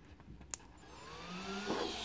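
A sharp click about half a second in as the Deans battery connector is plugged into the Racerstar 60 A waterproof brushless ESC, then the ESC's small 5 V cooling fan spinning up, its whir rising in pitch and growing louder.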